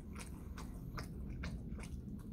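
A person chewing a mouthful of burger, a run of short sharp mouth clicks a few times a second.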